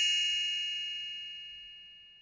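A single bell-like ding ringing on and fading steadily, almost gone by the end: the read-along's turn-the-page chime.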